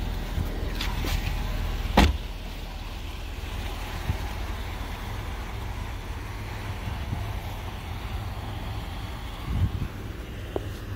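A car door shutting with one solid thunk about two seconds in, over a steady low rumble.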